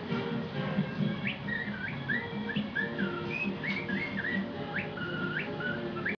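Recorded music playing, with a whistled melody over it from about a second in: a run of swooping, gliding notes.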